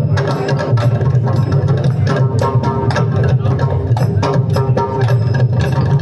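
Mridangam played with a fast, unbroken run of hand strokes, over a steady low sustained tone.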